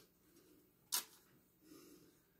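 A single brief, sharp click-like sound about a second in, from a cologne bottle being handled, over faint room tone.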